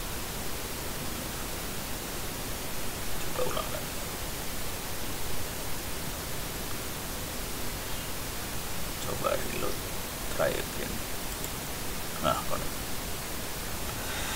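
Steady hiss of the recording's background noise. A few short, faint vocal sounds break it about three and a half seconds in and again between about nine and twelve seconds, the last a spoken "nah".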